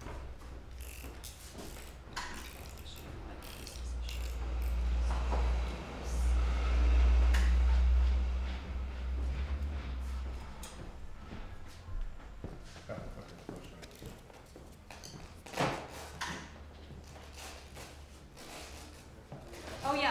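Canvas being stretched over a wooden stretcher frame with canvas pliers: handling of the canvas and frame, with scattered sharp clicks and knocks. A heavy low rumble about four seconds in, lasting some six seconds, is the loudest thing.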